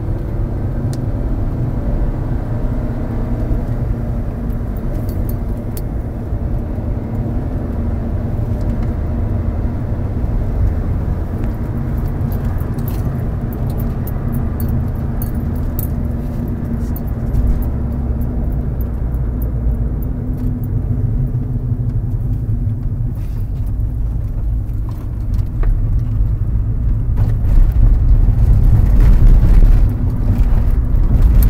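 Lancia Musa 1.4 16-valve petrol engine and road noise inside the cabin while driving, through gear changes of its DFN robotized gearbox. The owner describes the shifts as smooth and quick, without hesitation. Occasional light clicking rattles can be heard, and the rumble gets louder near the end.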